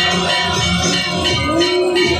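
Devotional aarti music with bells, accompanying the Ganga Aarti lamp ceremony; a long held note comes in near the end.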